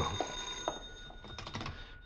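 Telephone bell ringing as a radio-drama sound effect, its steady ring fading away. A few short clicks near the end fit the receiver being picked up.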